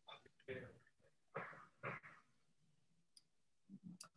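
Near silence on a video-call line, broken by a few faint, short voice sounds in the first two seconds and a brief faint sound just before the end.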